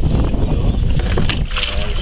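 Wind rumbling heavily on the microphone aboard a small boat being hauled across a river along a rope, with water noise around the hull. A faint voice comes in near the end.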